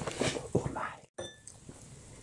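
Loud, close-miked chewing with the mouth open, a quick run of wet, smacking bites several times a second. It cuts off abruptly about a second in, leaving quiet room tone with a light clink of tableware.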